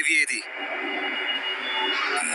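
A man's voice in dialogue over the drama's background music, with a brief sweeping sound effect at the start.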